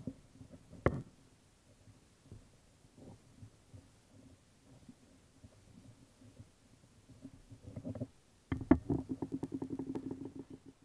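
Small stainless-steel pocket adjustable wrench being worked by hand: light taps and scrapes, with one sharp click about a second in as the jaw meets the edge of the piece it grips. Near the end comes a quick, even run of clicks, about eight a second.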